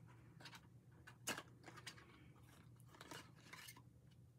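Near silence with a few faint clicks and light rustling as eyeglasses are put back into their packaging; the clearest click comes about a second in.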